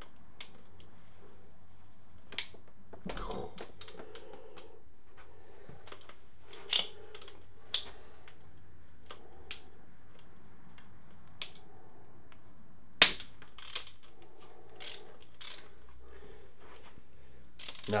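Socket wrench on an extension bar working 10 mm bolts loose from a motorcycle engine's aluminium crankcase: scattered metallic clicks and taps of the tool, with short stretches of ratcheting and one sharp, loud click about 13 seconds in.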